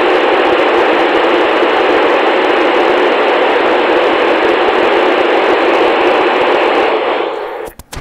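Steady FM static hiss from a receiver on the ISS downlink between transmissions: the station has stopped sending after "over", so only the receiver's own noise is heard. Near the end the hiss fades as the ISS transmitter comes back on, with a few sharp clicks just before the reply.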